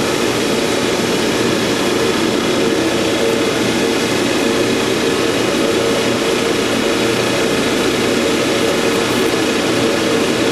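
Steady, loud drone of running machinery, with an even hum that does not change.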